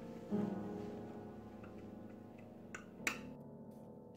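Piano soundtrack music: a low chord struck about a third of a second in, left to ring and slowly fade. Two sharp clicks come near the end.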